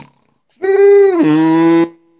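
A performer's comic vocal snore: one long held tone that drops to a lower pitch about halfway through.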